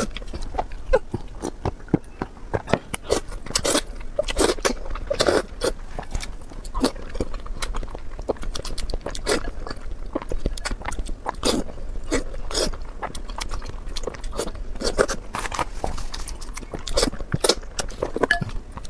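Close-miked mouth sounds of eating noodles and boiled eggs: chewing, slurping and wet lip smacks, a steady run of short irregular clicks.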